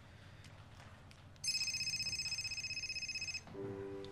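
Mobile phone giving an electronic ringing or alert tone: a high, fast-trilling tone that sounds for about two seconds, starting about one and a half seconds in.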